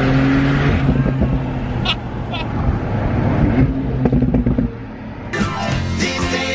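Porsche 911 Turbo S twin-turbo flat-six driving with the roof down: a steady engine note for about the first second, then wind noise and rumble in the open cabin with the engine fainter. Music comes in about five seconds in.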